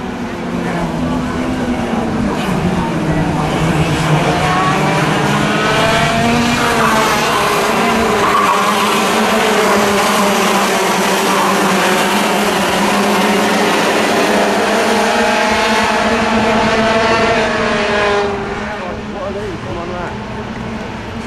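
A pack of Junior TKM racing karts' two-stroke engines revving hard as they pass close by, many pitches rising and falling over one another. The sound swells about two seconds in and drops away near the end.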